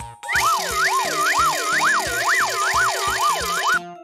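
Cartoon sound effect: a siren-like warbling tone that swings up and down about twice a second over a bright hiss. It starts shortly after the beginning and stops abruptly near the end, over background music with a steady beat.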